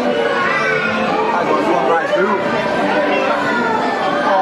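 Indistinct chatter of several people's voices talking over one another.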